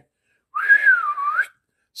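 A man whistling one call of about a second, rising, then dipping and rising again, a summoning whistle like one used to call an animal.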